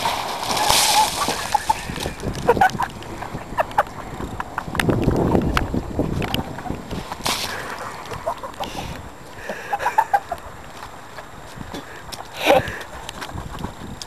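A bucket of water thrown onto a person in a plastic poncho, splashing and sloshing over the plastic, with several short bursts of splashing and spattering.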